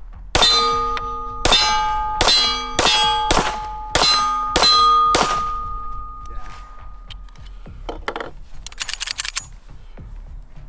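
Vis 35 9×19mm semi-automatic pistol fired eight times in quick succession, about one shot every 0.6 s. Each shot is followed by a metallic ringing that lingers for a couple of seconds after the last one. Faint metallic clicks come near the end.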